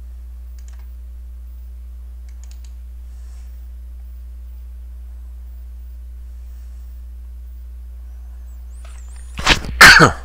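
Steady low electrical hum on the recording, with a few faint mouse clicks. Near the end the narrator makes a sudden loud non-speech vocal burst, like a sneeze.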